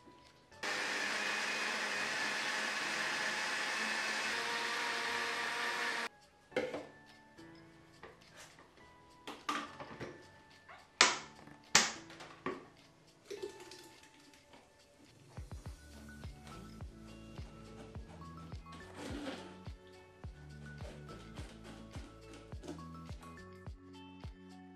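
Countertop jug blender running steadily for about five seconds as it blends chopped celery, ginger and water into juice, then cutting off abruptly. A few sharp knocks and clatter follow, the loudest near the middle, and background music with a steady beat comes in during the second half.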